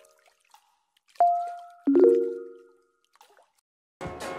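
Short intro sting of two pitched notes, each struck sharply and fading away over about a second: a single higher note, then a lower chord-like cluster about two-thirds of a second later.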